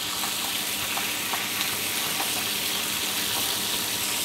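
Pieces of grouper steadily sizzling in hot olive oil with garlic in a frying pan, with a few light taps of a spatula as the fish is turned.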